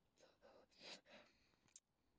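Faint breathy exhalations, a person sighing close to the phone's microphone, followed by a short sharp click near the end.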